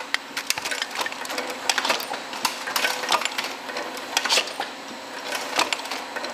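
Rotary cup-filling machine running on a dairy line: irregular clicks and clacks over a steady hum as plastic cups are handled and filled.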